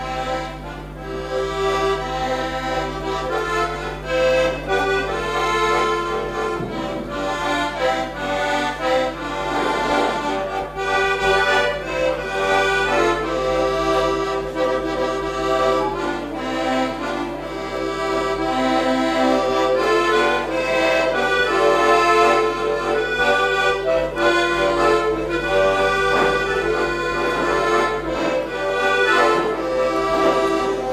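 Diatonic button accordion played solo: a Danube Swabian folk tune, melody over chords from the bellows-driven reeds.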